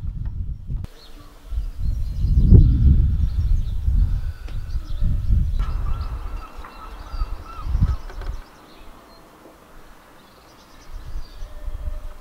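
Outdoor ambience: low rumbling wind noise on the microphone, with faint chirps of birds or insects. It drops away after about eight seconds.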